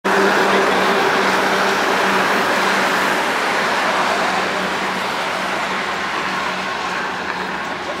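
Road traffic noise with a steady engine hum that fades after the first few seconds.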